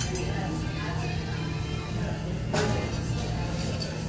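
A few light glass-and-ice clinks from a rocks glass holding a stirred cocktail over ice, the loudest about two and a half seconds in, over steady background music.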